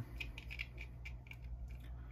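Light, irregular clicks and scratches of a servo bracket assembly being handled and fitted together by hand, over a faint steady low hum.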